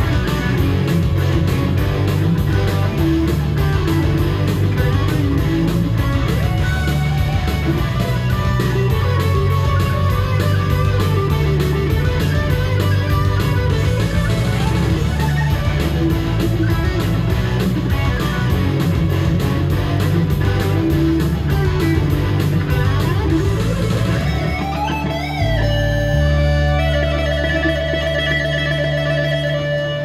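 Ibanez GRG220PA1 electric guitar played loud through an amp over a steady beat: fast rock lead lines, then string bends about 25 seconds in, and a final note held for the last few seconds as the piece ends.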